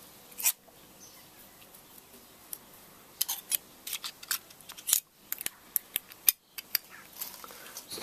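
Sharp metallic clicks and taps of a hand tool working against the rusty valve plate of an opened Prestcold/Copeland refrigeration compressor. One click comes about half a second in, then a dozen or so bunch together from about three seconds in.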